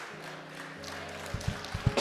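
Soft background music from sustained low keyboard notes, with a few short low thumps in the second half.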